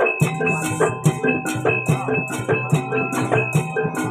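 Javanese jaranan gamelan music accompanying a kuda lumping dance: drum strokes and ringing metallophone and gong tones in a fast, even beat of about four strikes a second.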